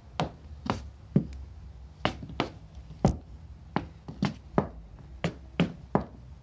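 Heeled ankle boots tapping on a porch floor as a tap-dance Cincinnati step is danced (step, brush, heel drop, shuffle, heel drop), repeated side to side: about a dozen sharp taps and scuffs in uneven clusters.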